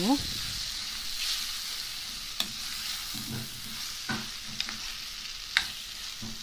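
Raw minced chicken sizzling in a pan with fried onions and spices while a metal spoon stirs it, with a few sharp clicks of the spoon against the pan in the second half.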